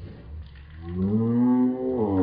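A woman's long, low groan, starting about halfway through, rising and then falling in pitch: a faked moan of pain as she hunches over with fake blood dripping from her mouth.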